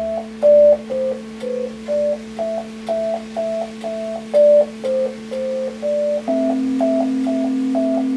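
Yamaha electronic keyboard playing a slow melody of short, evenly spaced notes, about two a second, over a held chord. The lowest held note steps up about six seconds in.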